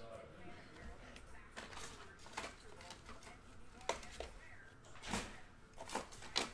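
Faint handling noises: scattered soft clicks and rustles of trading cards and rigid plastic card holders (top loaders) being picked through on a desk.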